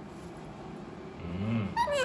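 Quiet room for about a second, then a short low hum, and just before the end a loud, high call from an Alexandrine parakeet, its pitch bending.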